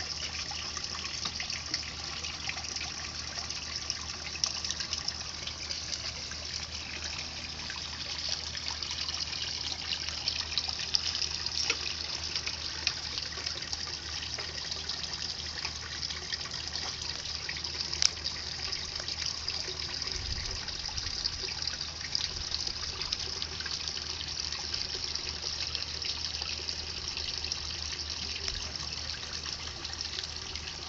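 A garden pond fountain: a stream of water from a spout pouring and splashing steadily into the pond.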